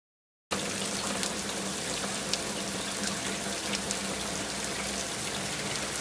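Steady rush of running water, with a faint low hum underneath, starting suddenly about half a second in.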